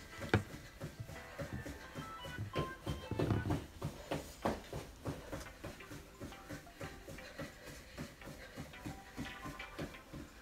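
Background music with short held tones, over the muffled footfalls of a person jogging in place on carpet at about three to four steps a second.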